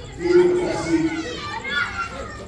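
A man speaking through a handheld microphone, with children's voices in the background rising near the end.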